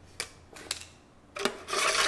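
Stiff dried kelp pieces rustling and scraping against the side of a clear container as a hand takes them out: a few crisp clicks, then a longer scrape near the end.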